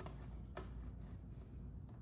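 Razer DeathAdder V3 gaming mouse buttons clicking three times: once at the start, again half a second in, and a fainter click near the end.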